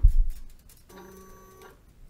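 A soft thump as the pump's click wheel is pressed, then about a second in a brief steady electric whir lasting under a second from the Grundfos DDA dosing pump's drive motor.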